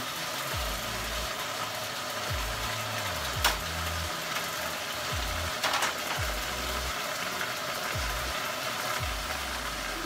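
Assorted meat sizzling and steaming in a stainless steel pot on the stove, cooking in its own juices without added water, as a steady hiss. A low uneven hum runs underneath, with a sharp click about three and a half seconds in and a few light ticks a couple of seconds later.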